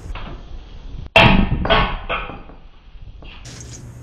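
A loud metal clank with a short ring about a second in, then two lighter knocks: a removed length of old galvanized gas pipe tossed onto a scrap pile.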